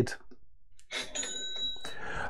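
A short swish, then a bell-like ding that rings for under a second and stops abruptly.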